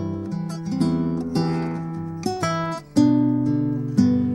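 Fingerstyle acoustic guitar playing the C-chord part of a slow swing tune, bass notes and melody notes plucked separately. Each pluck rings on and fades under the next.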